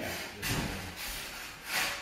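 Two short scraping rubs, one about half a second in and a louder one near the end, as a large-format tile is set and shifted into place by hand.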